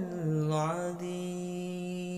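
A man's voice in melodic Quran recitation (qiro'ah), sliding through a short ornament and then holding one long, steady note.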